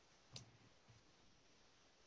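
Near silence with a single faint click about a third of a second in, from someone working at a computer: a key press or mouse click.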